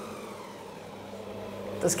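Stand mixer's motor running steadily at its slowest speed, its flat paddle beater working a very soft wholemeal dough in a steel bowl: a steady hum.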